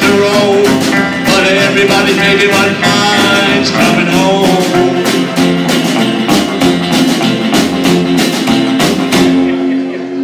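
Live rockabilly band playing an instrumental passage with a steady beat: electric guitar, acoustic rhythm guitar, upright bass and drums. Near the end the beat stops and a final chord is left ringing.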